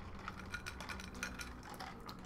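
Faint, scattered small clicks and rattles of ice cubes knocking in a drinking glass and a plastic cup as two people sip their drinks.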